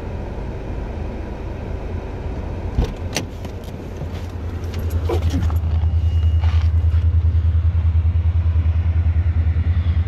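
A couple of sharp clicks from a car door opening about three seconds in, then a low engine rumble with a fast, even throb that grows louder from about five seconds in and holds steady. The train horn is not sounding.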